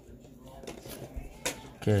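Baseball cards handled and flicked through in a hand-held stack: a faint papery rustle with two light card snaps, about one second in and about a second and a half in.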